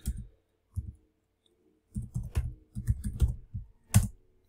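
Typing on a computer keyboard: a couple of keystrokes, a pause of about a second, then a quick run of about ten keystrokes, ending with one sharper click.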